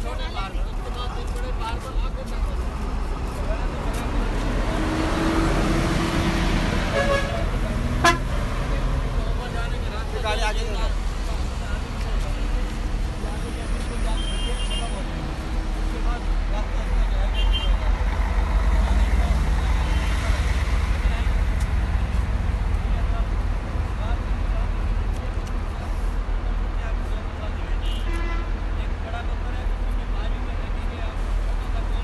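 Outdoor roadside din: many people talking at once over a steady low rumble of traffic and bus engines, with short vehicle horn toots.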